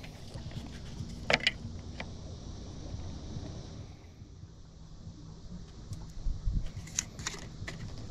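Light handling clicks and taps from a plastic bait cup and its lid on a boat's bait tray: a couple of sharp clicks a little over a second in, and a quick run of small clicks near the end. Under them runs a low, steady rumble.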